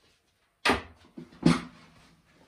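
Two sharp knocks about a second apart, with a brief low creak after the second: headphones being set down on a wooden desk and an office chair moving as a person gets up from it.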